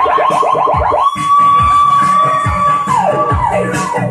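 Electronic dance music with a siren-like synth sound over a steady kick drum: fast repeated rising whoops, then about a second in a long held high tone that glides down near the end.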